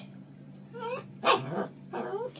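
A small long-haired dog making two short whiny barks, about a second in and again a little later.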